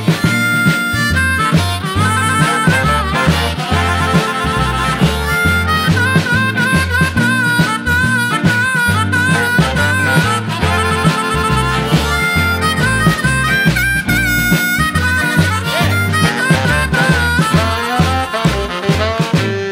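Live band playing an instrumental break with a harmonica lead: held, wavering harmonica notes over a steady stepping upright-bass line and electric guitar, with baritone saxophone and trumpet joining in.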